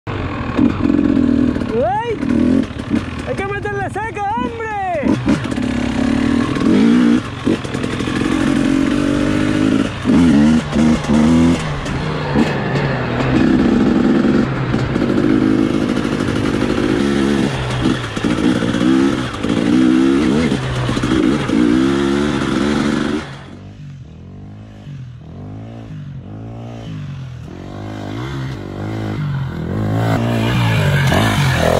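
Dirt bike engine heard from on board, revving up and down as it is ridden. About two-thirds of the way in the sound drops suddenly to a quieter bike revving again and again, growing louder near the end as it comes closer.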